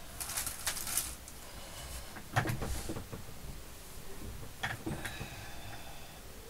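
Rustling of lace and small taps and clicks as ribbon roses are handled and pressed onto a fabric fan on a cutting mat.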